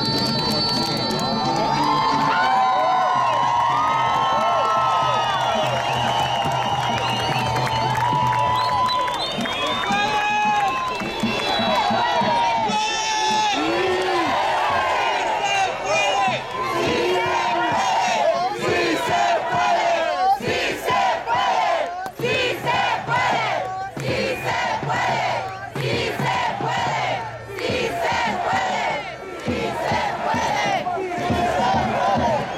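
Large rally crowd shouting and cheering, many voices overlapping at once. In the second half the shouts fall into a rough regular beat.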